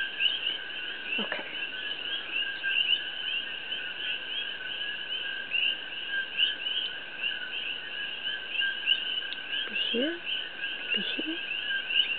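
A steady, dense animal chorus: rapid high chirps repeating without pause in two pitch bands, one higher and one a little lower.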